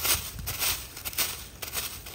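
Dry fallen leaves crackling and rustling in short, irregular bursts as a stick is pushed through the leaf litter and feet shift on it.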